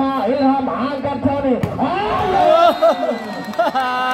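Excited male voice calling out over a volleyball rally, with crowd noise and a steady low hum underneath. There is one sharp knock about one and a half seconds in.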